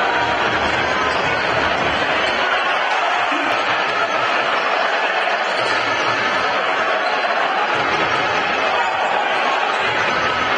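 Steady crowd noise in a basketball arena during play: the spectators' voices merge into one continuous, echoing din.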